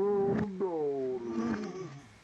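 A person's voice making long wordless cries: drawn-out notes that slide down in pitch, one after another.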